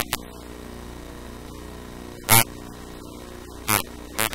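Steady electrical hum with a click at the start, and two short bursts of a distorted, buzzing voice, about two and a quarter seconds in and near the end.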